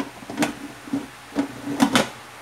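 Aluminium pressure-cooker lid being turned on the pot to engage its locking teeth, knocking and scraping against the rim: about four sharp knocks, each with a brief ring.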